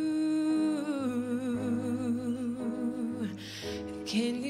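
A young woman's voice singing a wordless, humming melody into a microphone. The held notes waver with vibrato and step slowly down, with a short breath drawn near the end.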